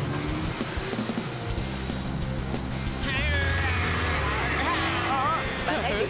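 Cartoon background music with sustained low notes under vehicle sound effects. About halfway through, wavering high notes come in.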